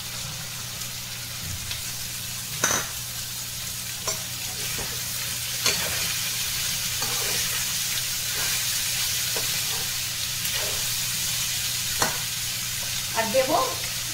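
Potato cubes and chickpeas sizzling in oil in a kadai while a metal ladle stirs them, with the ladle clicking against the pan a few times. A voice starts near the end.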